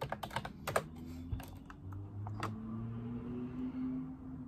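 Typing on a computer keyboard: a quick run of keystrokes in the first second, then a single keystroke about two and a half seconds in, over a low steady hum.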